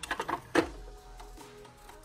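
A small drawer of a clear acrylic makeup organizer pushed shut by hand: a quick run of light plastic clicks, then a sharper knock about half a second in.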